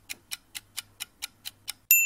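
Countdown timer sound effect ticking evenly, about four and a half ticks a second, over a faint low hum. Near the end it gives way to a bright, bell-like ding that rings on, marking the end of the countdown.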